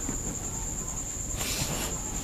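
Crickets trilling steadily in the background, a continuous high-pitched chirring. About one and a half seconds in comes a short hiss of breath drawn in during a slow breathing exercise.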